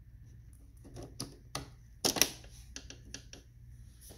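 Plastic clicks and snaps as ink cartridges are pressed and clicked into the print-head carriage of an Epson XP-446 inkjet printer. The clicks come in short clusters, with the loudest snap about two seconds in.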